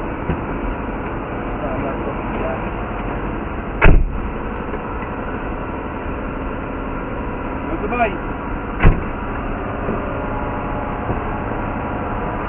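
Steady drone of idling engines, with faint voices in the background. A sharp thud about four seconds in is the loudest sound, and a second one comes near nine seconds.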